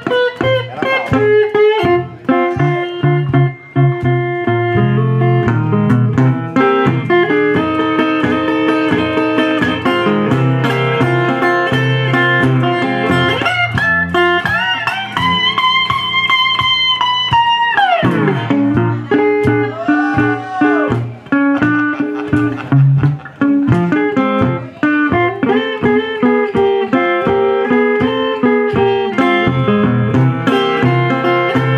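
Blues played solo on a metal-bodied resonator guitar: an instrumental break of picked notes, with a long held, wavering note about halfway through that glides steeply down.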